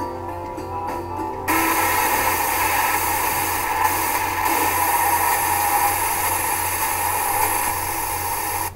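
The last held notes of a backing music track. About a second and a half in, a sudden steady hiss like static takes over and runs on unchanged.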